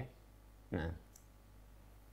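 A lecturer's pause: a single short spoken word, "nah", about a second in. Otherwise the room is quiet apart from a steady low hum and a faint click.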